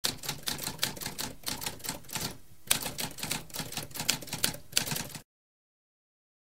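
Typewriter typing: a rapid run of key strikes, a brief pause about two and a half seconds in, then more keystrokes that stop suddenly a little after five seconds.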